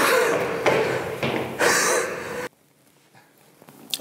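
A man breathing hard and panting after running up 17 flights of stairs, in quick breaths about every half second, cut off abruptly about two and a half seconds in.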